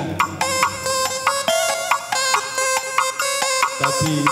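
Karo electronic keyboard (kibot) music: a bright, quick melody of short struck notes, its bass beat dropped out until just before the end, when the beat comes back.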